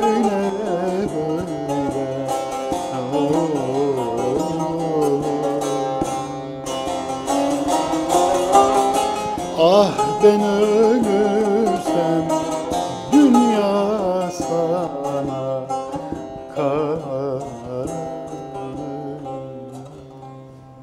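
A man singing a Turkish folk song to his own long-necked bağlama (saz), the strummed strings ringing steadily under a wavering, ornamented vocal line. The music dies away over the last few seconds.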